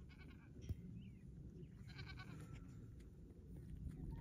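Newborn lamb bleating faintly, two short high-pitched bleats: one at the start and one about two seconds in, with a single soft thump in between.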